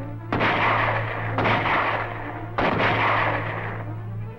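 Three gunshots about a second apart, each one sudden and followed by a long echoing tail. A steady low hum runs beneath them.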